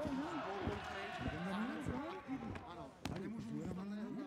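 Ringside sound of an amateur boxing bout: voices calling out over a run of dull thuds from punches and footwork on the canvas, with one sharp crack about three seconds in.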